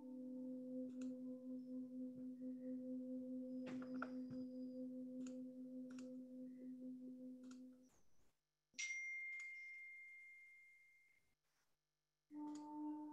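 A faint, steady, bell-like ringing tone with a slow pulsing waver, which stops about eight seconds in. Then a single higher ringing tone starts and fades away over about two and a half seconds.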